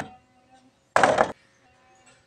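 One short scrape of a hacksaw on a hollow PVC door panel about a second in, under a faint steady tone.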